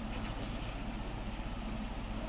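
Steady low background hum of an indoor shooting range, with a faint steady tone and no distinct sounds.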